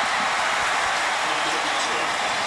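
Large football stadium crowd cheering loudly and steadily just after a made field goal.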